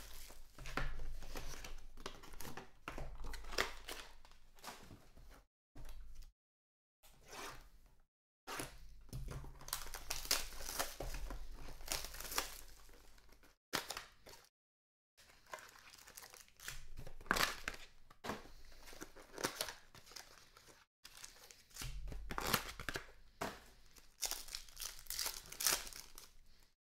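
Trading card packs and their cardboard mini-boxes being handled and torn open: irregular rustling, crinkling and tearing of foil wrappers and cardboard, with a few brief drop-outs to silence.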